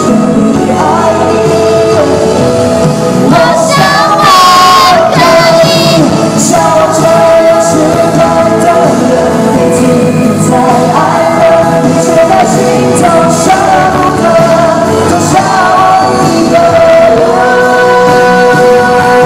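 A male pop singer singing live into a microphone over backing music, recorded from within the audience of a large hall.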